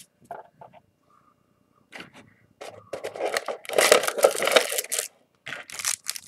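Foil trading-card booster-pack wrappers crinkling and crackling as they are handled. After a few faint clicks there is a dense spell of crinkling in the middle and another short one near the end.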